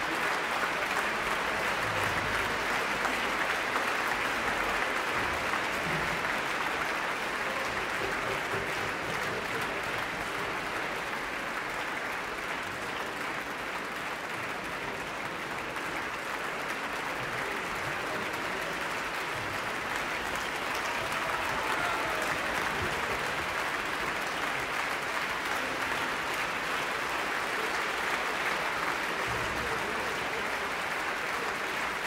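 A large concert-hall audience applauding steadily, easing a little midway and then swelling again.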